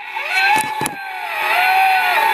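Electronic sound effect from an animated Halloween prop: one long, wavering, moan-like tone that dips and rises again, with a few short clicks about half a second to a second in.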